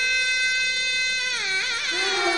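Nadaswaram, the South Indian double-reed pipe, playing a long held reedy note that slides down about a second and a half in, then breaks into quick ornamental bends.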